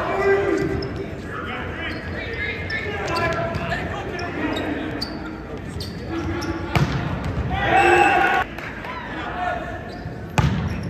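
Men's indoor volleyball rally in a large hall: repeated sharp hits of the ball over players' voices, with a loud hit just before seven seconds. A burst of loud shouting follows as the point is won.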